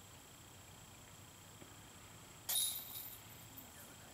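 A putter disc striking the hanging chains of a disc golf basket: a sudden metallic chain jingle about two and a half seconds in that rings briefly and fades. The putt is made.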